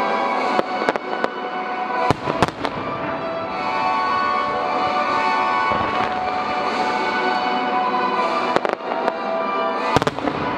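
Aerial firework shells bursting in volleys, with a cluster of sharp bangs in the first few seconds and a few more near the end, over steady music.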